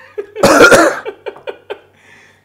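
A man coughing: one loud, harsh cough about half a second in, then four short, quick pulses.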